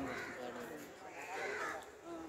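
A crow cawing twice, once at the start and again about a second and a half in, over the low chatter of a crowd of people.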